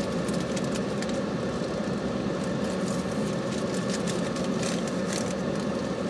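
Steady, even hum of a car idling, heard from inside the cabin.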